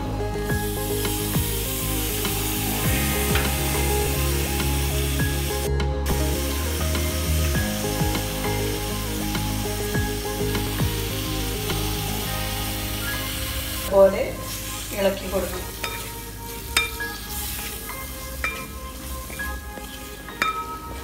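Tomato wedges and onion-spice masala frying in a pan, a steady sizzle. From about two-thirds of the way in, the sizzle drops and a spatula stirs the mix, scraping and clicking against the pan.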